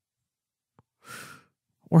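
A man's short in-breath close to the microphone about a second in, just after a faint mouth click. The onset of a spoken word follows near the end.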